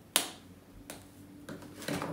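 A single sharp snap from the plastic charging case of U&i TWS 5454 wireless earbuds being handled, followed by a few fainter clicks and taps.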